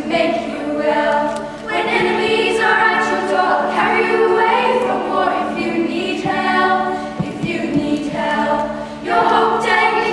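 A school choir of children's voices singing together in harmony, in phrases with short dips between them.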